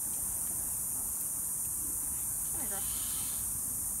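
A steady high-pitched hiss with no rhythm, with faint voices about two and a half seconds in.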